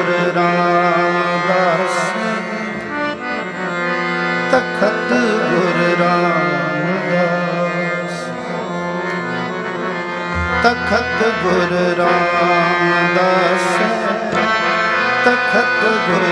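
Live Sikh kirtan: a harmonium holds sustained chords under a singer's ornamented melodic line, with tabla accompaniment. The tabla strokes are sparse at first and grow quicker near the end.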